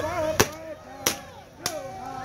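Three gunshots about half a second apart, police guns fired into the air at a drone overhead.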